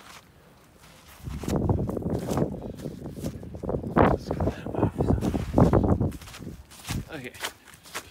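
Gloved hand sweeping and pushing packed snow off a car's door and window trim: a run of crunching, scraping swipes that starts about a second in and fades near the end.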